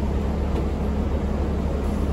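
Steady low drone of a 2006 New Flyer D40LF diesel transit bus, with engine and running noise heard from inside the passenger cabin.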